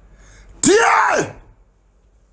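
A man's single loud non-speech vocal sound about halfway in, lasting about half a second: it starts suddenly with a noisy burst, and then his voiced pitch rises and falls once.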